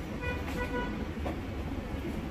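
A vehicle horn giving two short beeps about a quarter-second in, over a steady low rumble.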